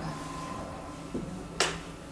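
A single sharp click about a second and a half in, with a fainter tick just before it, over quiet room tone.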